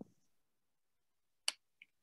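A sharp click about one and a half seconds in, then a fainter, higher click a moment later.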